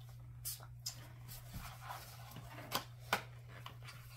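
Faint rustling and a few light clicks from a small cardboard toy box being handled and opened by hand.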